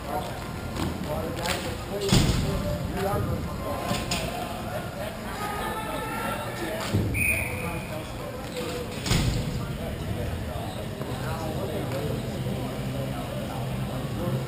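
Hockey game sounds in a rink: players' distant shouts and calls, with three sharp knocks of stick or puck, about two seconds in, near the middle and a couple of seconds later.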